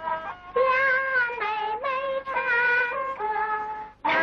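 A young woman singing a 1930s Chinese popular song in a high voice with vibrato over instrumental accompaniment, from an old film soundtrack; a brief break, then the sung line picks up again about half a second in.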